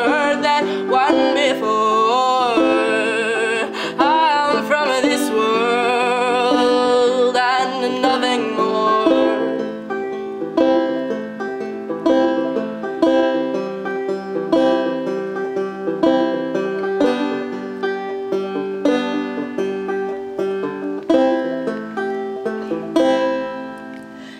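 Banjo picking in an acoustic folk song. For roughly the first nine seconds a sung vocal line with no clear words and a wavering pitch rides over it, then the banjo plays on alone.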